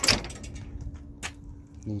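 Parking-brake lever on a Husqvarna V548 stand-on mower being worked: a sharp clack right at the start and a lighter click about a second later, as the lever is pulled to release the brake.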